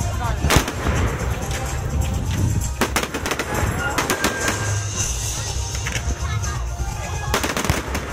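Fireworks shells bursting overhead in a string of sharp bangs: a loud one about half a second in, a couple around the middle and a quick run of reports near the end, over a continuous low rumble.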